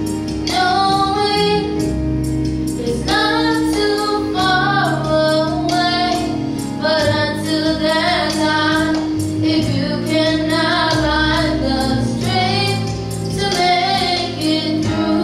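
A girl singing a solo into a microphone over instrumental accompaniment with a steady beat.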